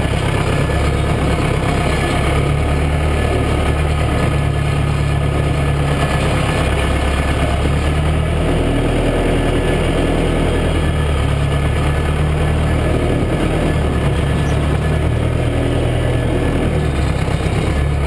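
Massey Ferguson 590 tractor's four-cylinder diesel engine running steadily, heard from inside the cab. Its note changes for a few seconds about halfway through as the driver works the loader.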